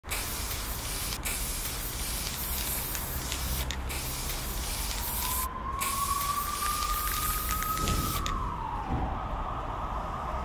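Aerosol spray-paint can hissing in long bursts with a few short breaks, stopping about eight seconds in. Behind it, a tone rises slowly and then drops away near the end.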